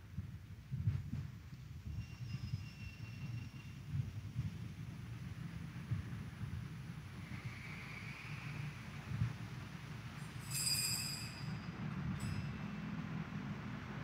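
Low steady rumble of background noise in a large church during a lull, with a faint ringing tone about two seconds in and a brief, bright chime-like ring about ten and a half seconds in.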